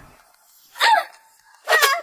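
A woman giving two short, sharp cries of pain, about a second apart, as she is being beaten.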